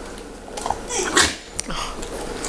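Saint Bernard making a few short, breathy vocal sounds, the loudest about a second in.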